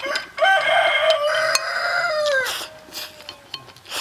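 A rooster crowing once: one long call lasting about two seconds that drops in pitch as it ends.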